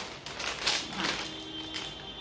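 Plastic snack packet crinkling and crackling as it is pulled and torn open, a quick irregular run of sharp crackles.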